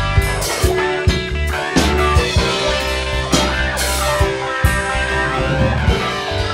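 A rock/blues jam on electric guitars and an electronic keyboard, played together over a steady drum beat of about two hits a second.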